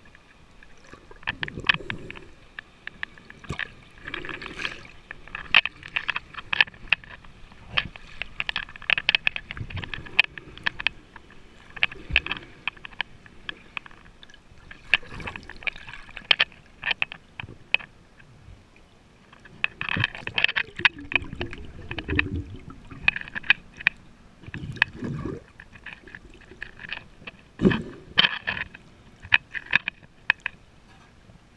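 Underwater sound picked up by a camera held just below the water surface: water sloshing and gurgling in swells every few seconds, with many sharp clicks and ticks throughout.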